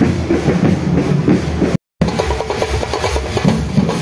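Drumming and music of a marching street procession, with quick, regular drum strokes. The sound drops out completely for a moment just before the midpoint, at an edit, then carries on.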